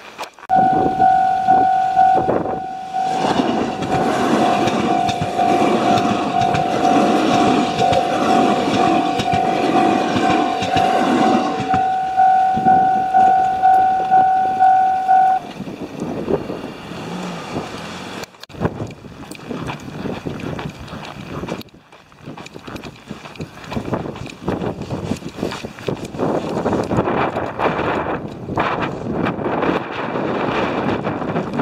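Japanese railway level-crossing warning bell ringing in a rapid, even pulse, about two strokes a second, while a train passes over the crossing. The bell stops about fifteen seconds in, leaving wind noise on the microphone.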